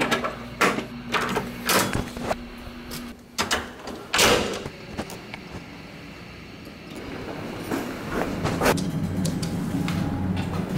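Metal clicks and clacks of a hotel room door's swing-bar guard and latch being worked, then a louder swish-thud about four seconds in as the door swings shut. From about seven seconds there is a steady low hum of a hotel elevator arriving, with its doors sliding.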